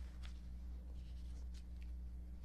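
Faint, brief rustles and scratches of papers being handled, over a steady low electrical hum in a small room.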